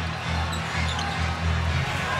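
Basketball arena sound: bass-heavy music over the PA pulses under a steady crowd din, with a ball being dribbled on the hardwood court.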